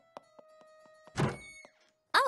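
A few faint clicks with soft held notes, then a single loud thunk about a second in, followed by a brief ringing tone.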